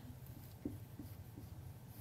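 Dry-erase marker writing on a whiteboard: a few faint strokes and taps over a low steady room hum.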